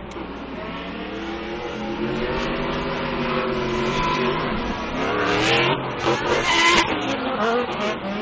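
Two drift cars, a supercharged Ford Mustang and a BMW, sliding in tandem: their engines rev up and down at high rpm over the sound of sliding, smoking tyres. The engines get louder about five seconds in.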